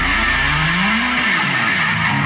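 Electric guitar, a Line 6 JTV-89F, holding a note through an effect that sweeps up and then back down once, in a rock song. The drums and bass drop away in the second half.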